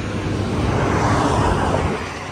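A big truck driving past on the road, its rushing noise building to a peak mid-way and easing off near the end.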